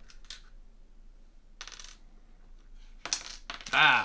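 Game coins and pieces clinking and rattling in a plastic component organizer as a hand picks through them, in a few short separate bursts. A brief voice sound near the end is the loudest thing.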